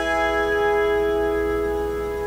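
Autoharp chord ringing on after a strum and slowly fading, its strings sustaining together with no new stroke.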